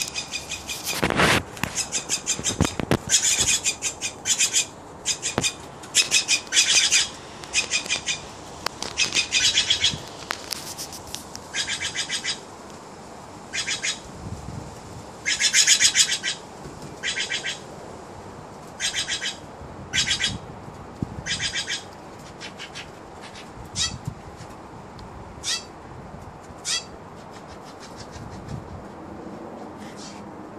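Steller's jays calling over and over with harsh calls, each under a second long. The calls come in quick succession at first, then grow fewer and shorter toward the end.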